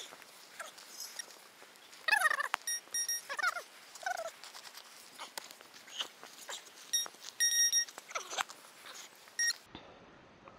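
A metal detector giving short, high-pitched electronic beeps as a dug clod of soil is checked over its coil: a few beeps around three seconds in, a run of them around seven to eight seconds in, and one more near the end. Between them are scraping and crumbling sounds of soil and grass being handled, and a few short sliding sounds of unclear source.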